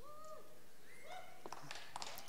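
A pause between words: steady room tone of a large hall, with a few faint, brief pitched sounds.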